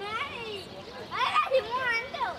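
Children's high-pitched voices chattering and calling out, several at once, loudest a little past the middle.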